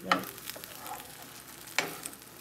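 Eggs and spinach sizzling in a nonstick frying pan while a spatula folds and turns them, with two sharp scrapes or knocks of the spatula against the pan, one just after the start and one near the end.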